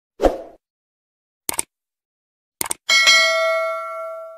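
Subscribe-button animation sound effects: a short thud, a single mouse click about a second and a half in, a quick double click, then a bright notification-bell ding about three seconds in that rings on and fades.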